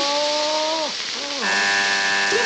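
Steam hissing steadily from a small steam inhaler held at a man's face, while he lets out two long, drawn-out cries. The first fades out just before halfway, and a second, lower one starts soon after.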